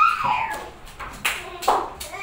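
Children at play: a child's brief high-pitched cry at the start, then two sharp slaps in the second half.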